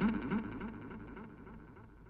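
Film background music dying away: a quick, repeating low instrumental figure fades steadily to near silence.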